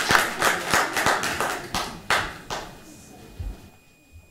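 Audience applause in a meeting room, thinning out to a few last claps and dying away about two and a half seconds in. A single low thump follows near the end.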